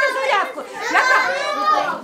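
Several children's voices calling out over one another, with a woman's voice among them: children answering a quiz question together.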